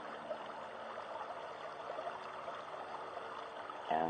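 Creek water running steadily, a soft even rush.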